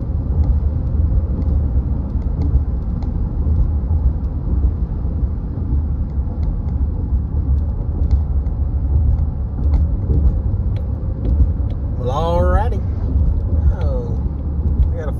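Car driving along a paved two-lane road, heard from inside the cabin: steady low road and engine rumble. A brief voice sounds about twelve seconds in.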